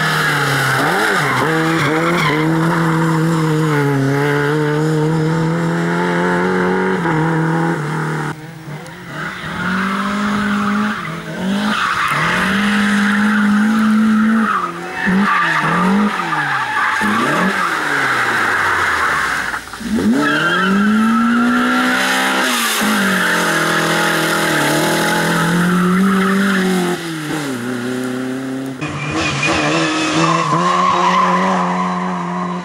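Lada rally cars' four-cylinder engines revving hard, one car after another, the pitch climbing and dropping again and again as they lift off and accelerate through a tight slalom. Tyres scrub and skid under the sideways driving.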